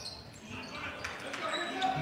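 Live gymnasium sound of a basketball game picked up by the broadcast microphone: a basketball being dribbled on the court, with faint crowd voices in the hall.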